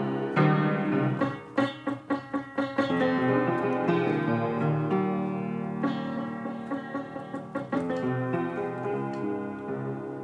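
Solo piano playing: a run of quick, separately struck notes in the first few seconds, then held chords that slowly fade.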